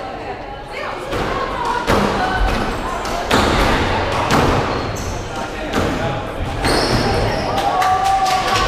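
A squash rally: the ball is struck by racquets and hits the court walls several times, roughly once a second, each hit a sharp smack in a hard, echoing court, with short squeaks of shoes on the wooden floor.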